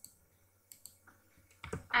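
A few separate clicks from a computer keyboard and mouse as a line of code is copied and a new line opened in a text editor.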